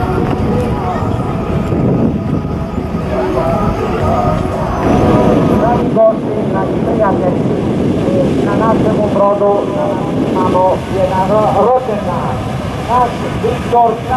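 Engine of a passenger excursion boat rumbling as it pulls away from the quay. From about five seconds in, a group of voices on board is singing over it.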